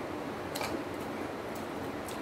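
Close-up eating sounds: a child chewing a mouthful of food, with one short sharp smack about half a second in, over a steady background hiss.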